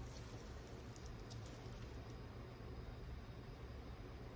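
Faint soft ticks and squishing in the first two seconds from the end of a paintbrush being worked through thick wet acrylic paint on canvas, over a low steady room hum.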